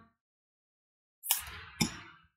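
Oracle card being drawn from a deck by hand. After about a second of silence comes a short papery rustle, then a sharp snap of card stock half a second later.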